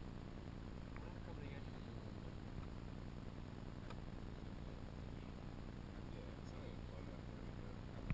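Faint, distant voices over a steady low rumble of outdoor background noise, with a faint click about a second in and another near four seconds.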